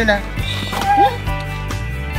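Golden retriever giving a short rising yip about a second in, over steady background music.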